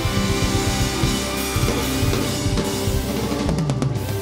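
Live rock band playing an instrumental passage, with the drum kit to the fore over bass and electric guitar. It breaks into a few short stop hits near the end.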